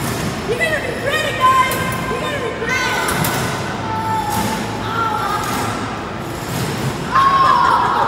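Indistinct high-pitched voices calling out over background music, with no clear words.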